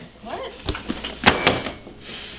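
A faint voice, then about four sharp knocks in quick succession, the loudest a little over a second in.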